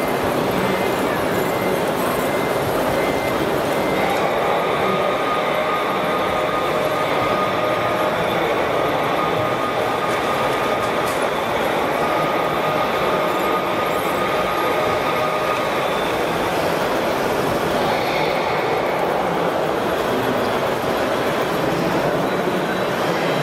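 Steady mechanical running and rattling from RC model machinery at a gravel loader. A thin electric-motor whine comes in about four seconds in and fades out near sixteen seconds.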